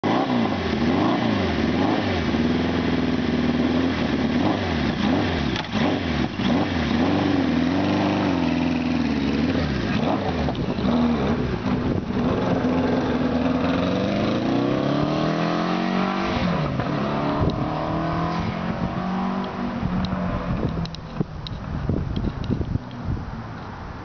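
1976 Kawasaki KZ900's air-cooled inline-four engine revving up and down several times, then pulling away under acceleration, rising in pitch through a gear change and fading as the motorcycle rides off near the end.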